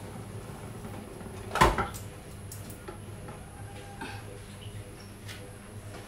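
A single short knock from cookware being handled about a second and a half in, then a quiet kitchen with a few faint small clicks.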